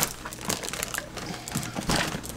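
Two nested plastic totes being tugged and worked apart, crinkling and scraping with scattered sharp clicks; they are stuck together by suction.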